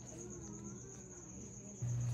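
A faint, steady, high-pitched pulsing trill, insect-like, over quiet room tone, with faint wavering low tones underneath.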